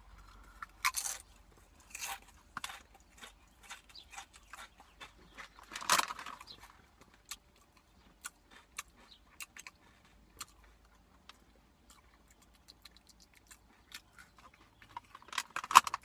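Crunching and chewing of dry protein tortilla chips in the mouth, with louder crunches about one, two and six seconds in. Near the end comes a burst of crinkling from the chip bag as a hand reaches in.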